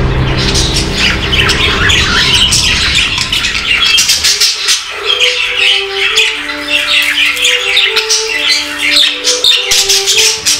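Budgerigars chattering and chirping busily in rapid high notes, over background music: a low rumble that fades about four seconds in, then a simple melody of held notes.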